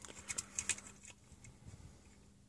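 A few faint plastic clicks and taps from handling a Transformers Combiner Wars Armada Megatron toy's missile cannon, its fire mechanism being worked without launching the missile.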